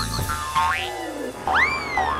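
Cartoon boing sound effects over background music: a wobbling warble at the start, a short upward glide in the middle, then a louder springy boing that shoots up in pitch and slowly slides back down near the end.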